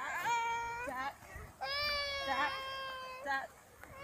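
A high-pitched voice singing two long held notes, the first about a second long and the second about a second and a half, with a short break between.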